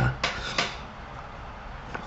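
A pause in a man's speech: steady low room hum, with two short soft noises in the first second.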